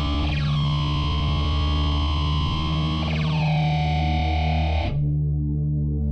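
Grime instrumental played from Launchpad's London Grime sample pack: a high synth lead whose notes start with falling pitch sweeps, over a steady deep bass. The lead cuts off suddenly about five seconds in, leaving only the bass.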